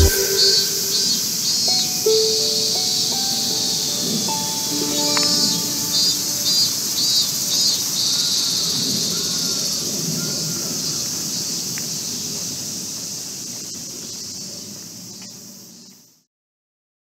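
Steady high sizzling chorus of summer cicadas, with a few brief tones and short calls over it, fading out toward the end.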